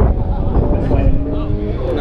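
Men talking beside the car over a steady low rumble.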